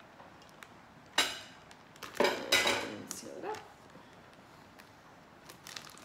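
Kitchenware knocked and set down: a sharp clack about a second in, then a louder clatter with a brief ring about two seconds in. Faint plastic-bag crinkles near the end as a filled ziploc bag is handled.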